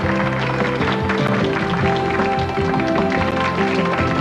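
Instrumental TV show bumper music, with held notes and chords, marking the break to the next segment.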